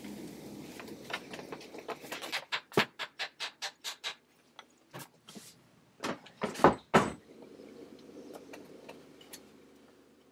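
A mallet knocking a wooden chair leg down into its joint in a Parsons chair frame: a quick run of even taps, about four a second, then a few harder blows about six to seven seconds in.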